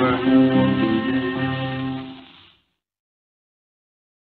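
Closing bars of an old-time string band recording of banjo, fiddle and guitar: the last held chord fades out and stops about two and a half seconds in, then silence.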